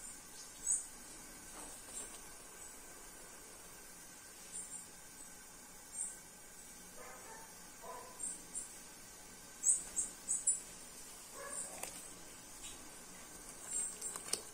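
Faint background with a scattering of short, high-pitched animal chirps, a dozen or so spread through, and a brief lower call about halfway through.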